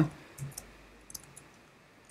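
A few soft computer keyboard key clicks: one small group about half a second in and another just after a second, as keys are pressed to save and switch apps.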